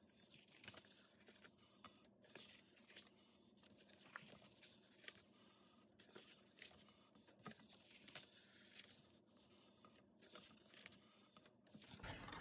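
Faint, scattered rustles and crinkles of cardstock being folded and creased by hand along its score lines.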